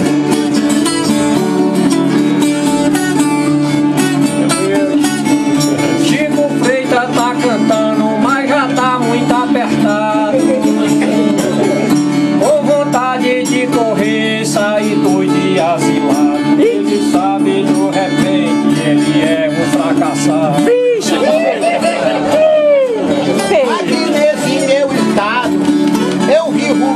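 Two Brazilian violas strummed together in a steady, repeating baião figure, with open strings ringing as a constant drone under the melody. This is the instrumental interlude that repentistas play between sung stanzas.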